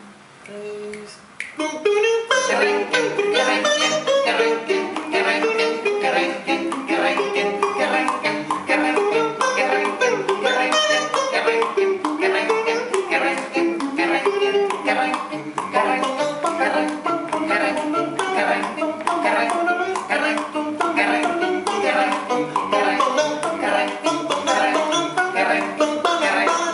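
A five-man a cappella vocal-play group singing a Venezuelan folk song. Their voices imitate a strummed, banjo-like string accompaniment and percussion in a steady bouncing rhythm. It starts about two seconds in.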